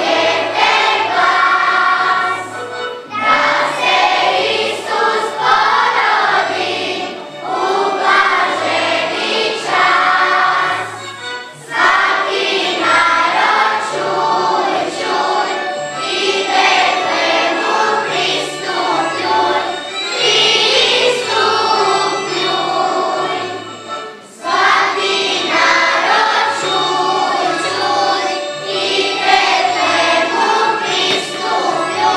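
Children's choir singing a song together, with instrumental accompaniment carrying a bass line that moves in even steps, and short breaks between phrases.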